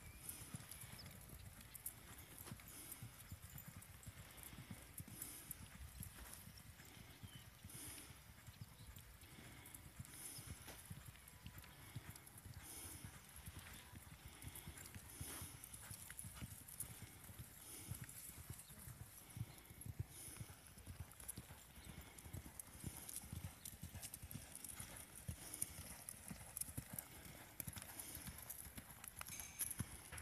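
Faint, dull hoofbeats of a reining mare loping on an arena's sand, a steady run of soft thuds.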